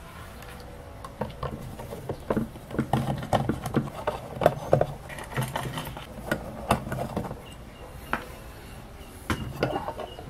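A screwdriver backing screws out of the rubber feet of a small sheet-metal power-supply box, with irregular clicks, taps and knocks from the tool and from handling the box. The knocks are thickest in the first half.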